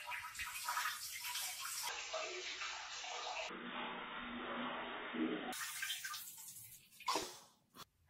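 Cartoon sound effect of a person urinating: a steady stream of liquid splashing into a toilet bowl for about seven seconds, with a brief burst near the end.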